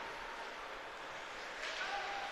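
Faint ice-rink ambience during a hockey game: an even wash of crowd murmur and play on the ice, growing a little louder near the end.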